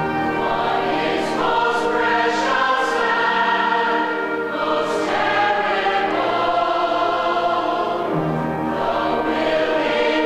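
Large mixed-voice stage chorus singing in long held chords.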